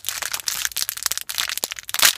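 A small thin plastic packet crinkling and crackling as hands unwrap it, in quick irregular rustles.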